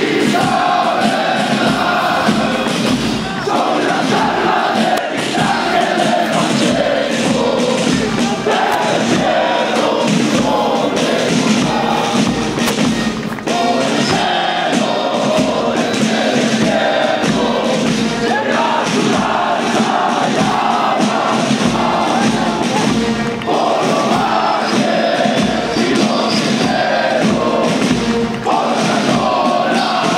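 Many soldiers' voices chanting a marching song in unison as a formation jogs past, in phrases with short breaks, over the steady, regular thud of boots on pavement.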